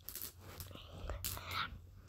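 Faint breathy whispering from a person's voice, in a few short puffs, over a low steady hum.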